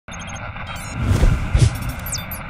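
Sound effects for an animated channel logo: a quick run of about four short high electronic beeps, then two whooshes, each with a deep bass hit, and a few sharp clicks near the end.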